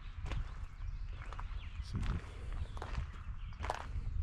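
Footsteps crunching on gravel, a handful of steps at a walking pace.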